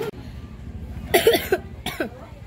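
A person coughing: a short run of three quick coughs about a second in, then one more short cough near the end.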